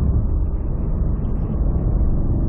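Mercedes-AMG CLS63 S (W218) twin-turbo V8 running steadily in third gear, lightly loaded as the car eases off slightly, with road noise, heard from inside the cabin.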